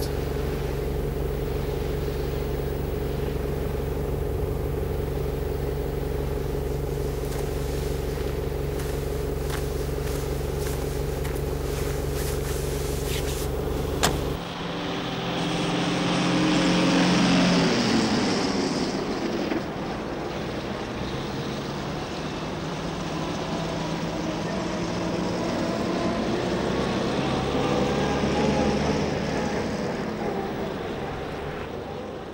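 Estate car's engine idling with a steady hum, a sharp knock about fourteen seconds in, then the car pulls away, its engine swelling as it accelerates before settling into steady driving.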